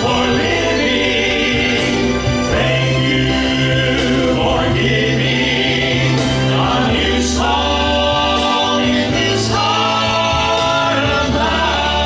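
Traditional male Southern Gospel quartet singing in harmony into handheld microphones.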